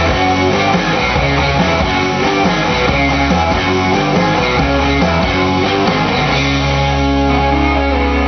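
Rock music led by electric guitar over a low bass line. A little past six seconds in, it settles onto a long held chord.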